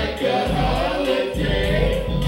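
Live hip-hop set played loud through a club PA: a backing beat with heavy bass and sung vocal lines over it.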